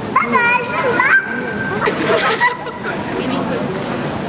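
Children's high-pitched voices and general chatter, with one child's voice rising high and clear in the first second or so.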